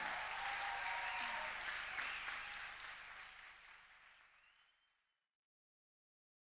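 Audience applauding, the clapping fading out over about five seconds.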